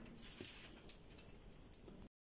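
Nearly quiet room with a faint rustle and a few soft, light ticks.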